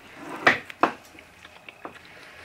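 Two sharp knocks a little under half a second apart: a kitchen knife chopping through smoked pork ribs onto a wooden cutting board.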